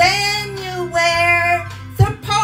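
A woman singing into a handheld microphone, holding two long notes, the second beginning about a second in, with backing music underneath.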